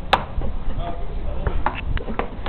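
Several sharp knocks over a low rumble. The loudest comes just after the start and a quick run of three follows near the end.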